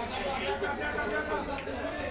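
Background chatter: several people talking at once, their voices overlapping.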